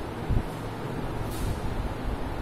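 Steady low rumbling background noise with uneven low thumps, and a faint brief scratch of a marker on a whiteboard about a second and a half in.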